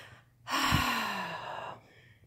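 A woman's long sigh in frustration: a breathy exhale about half a second in, its faint voiced tone falling in pitch as it fades.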